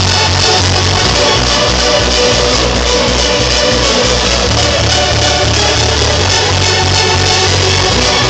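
Loud electronic dance music with a steady bass beat, played by a DJ in a club.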